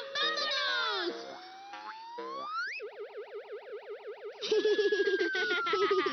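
Cartoon sound effects: springy boings and a long whistle-like glide rising in pitch over about three seconds. Then a fast warbling tone, and from about four and a half seconds a louder jumble with a slow falling glide, over music.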